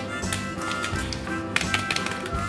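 Background music, with a quick cluster of taps about three-quarters of the way in as a wrapped chocolate bar is grabbed off the table.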